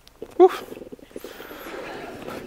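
A man's exclaimed "whew": a short voiced note about half a second in, trailing into a breathy exhale.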